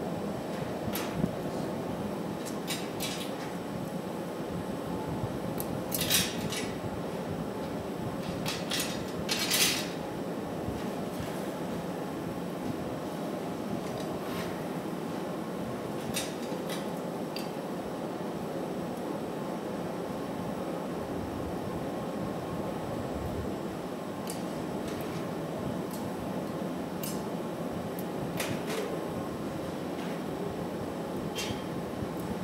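Steady roar of glassblowing furnaces and exhaust fans, with scattered metallic clinks and taps of steel hand tools set down and picked up on a steel bench, the loudest about six and nine to ten seconds in.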